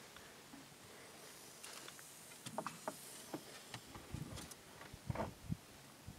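Faint handling sounds as a metal oxalic acid vaporizer pan is slid into a wooden beehive entrance: scattered light clicks and scrapes, with a few soft knocks in the second half.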